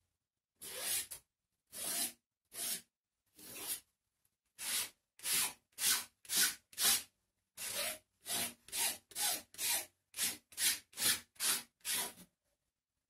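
A palette knife scraping thick acrylic paint across a sheet of paper on an easel, one short rasping stroke after another. The strokes come slowly at first, then quicken to about two a second from about four seconds in.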